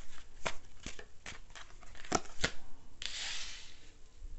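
Tarot cards being dealt from a hand-held deck and laid on a table: a quick run of crisp card snaps and taps, then a short hiss of a card sliding across the surface near the end.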